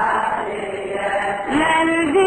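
Arabic Shia lamentation chant (latmiya) by a male Iraqi reciter: a blurred mix of chanting voices, then about one and a half seconds in a single voice starts a long held note.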